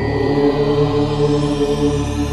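Devotional intro music: a steady, sustained chanted drone in layered low voices, with the ringing of a bell struck just before fading out under it.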